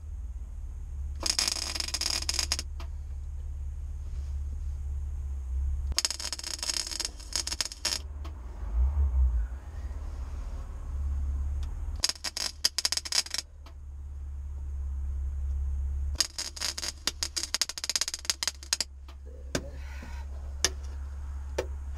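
Welding on the rusted rear body sheet metal of a Subaru WRX wagon: four separate crackling runs of about one to three seconds each, with pauses between, over a steady low hum.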